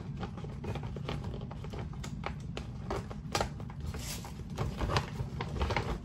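A paper gift bag and tissue paper rustling and crinkling as things are pushed into it by hand, in irregular crackles.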